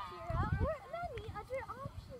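Distant voices of players and spectators calling out across an open soccer field, with an uneven low rumble of wind on the microphone underneath.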